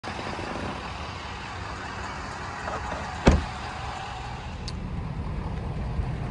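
Steady rumble and hiss of a motor vehicle outdoors, with one loud, sharp knock about three seconds in.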